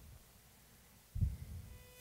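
Faint room tone with a single low, muffled thump a little over a second in, followed by a faint brief pitched tone near the end.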